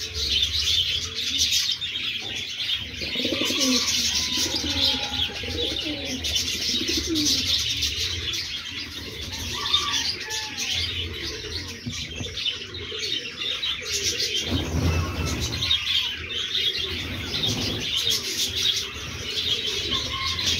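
American fantail pigeons cooing, low calls that rise and fall, heard mostly in the first half, over a steady chatter of high bird chirps.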